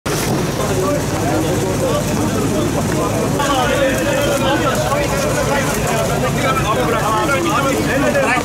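Several people talking and calling out over one another, with a steady low rumble underneath.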